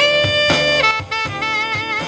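Saxophone playing a jazz solo with drums behind: a note bent up into a long held tone, then a note with wide vibrato.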